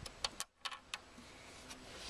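A quick run of about six sharp clicks and light knocks in the first second from a plastic tow eye cover and its push-and-turn clips being handled, then only a low background hum.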